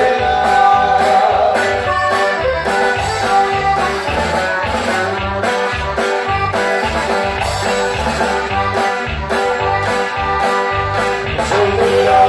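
Live band playing amplified dance music: a steady, pulsing bass beat under sustained melody lines.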